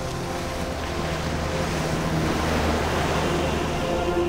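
Steady rush of sea water and wind, swelling slightly about two-thirds of the way through, with faint steady low tones beneath.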